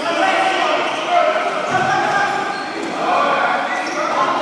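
Live futsal play in an indoor sports hall: players calling out over the ball being kicked and bouncing on the hard court.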